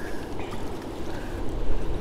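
Steady rush of river water and wind, with no distinct event.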